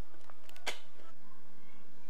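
A short cluster of sharp clicks from the camcorder being handled, the loudest a little under a second in.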